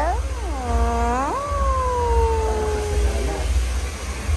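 Small white dog giving drawn-out, howl-like whines with sliding pitch: a quick dip and rise, then one long tone falling slowly and fading out a little past three seconds in. A steady low hum runs underneath.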